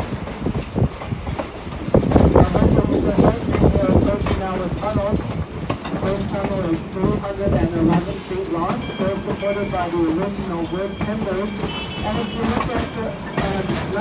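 Steam-hauled passenger train running on the track, heard from the car's open platform: steady rolling noise with wheels clacking over the rail joints. People are talking over it.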